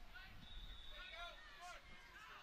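Very faint distant voices over near silence: scattered short calls with nothing loud.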